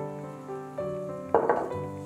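Soft piano music throughout, with one short knock and scrape about one and a half seconds in as a stoneware mixing bowl is set down on the countertop.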